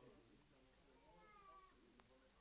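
Near silence, with faint distant voices in the room and one brief higher-pitched call about a second and a half in.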